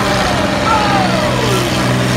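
Combine harvester engines running with a steady low drone, while a voice near the microphone exclaims 'Oh!' with a falling pitch just under a second in.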